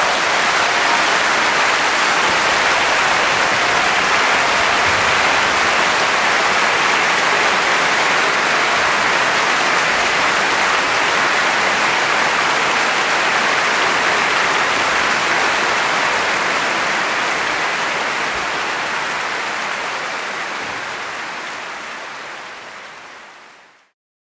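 Large audience applauding steadily, fading out over the last few seconds.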